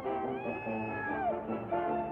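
Early-1930s cartoon orchestral score. About half a second in, a high gliding sound rises over the music and then sags down near the middle.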